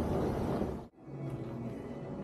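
Indoor ambience of a large hall that cuts off suddenly about a second in, followed by quieter room tone with a steady low hum.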